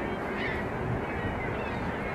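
Steady rushing outdoor background noise, with a faint, short bird call about half a second in.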